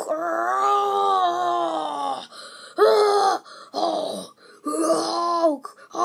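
A voice making wordless vocal sound effects: one long drawn-out sound of about two seconds with slightly falling pitch, then three shorter ones.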